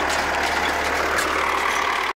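Tractor engine running steadily at a constant speed, an even mechanical drone that neither rises nor falls.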